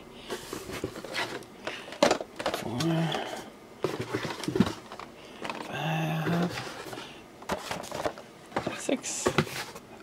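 Cardboard toy boxes being taken out of a shipping carton and set down on a tabletop: scattered knocks, taps and scrapes of cardboard.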